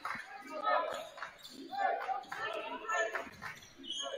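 A basketball being dribbled on a hardwood gym floor, with players' and spectators' voices in the background.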